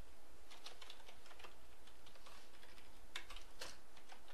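Computer keyboard typing: irregular keystroke clicks, bunched in a run around the first second and another near the end, over a steady low hum.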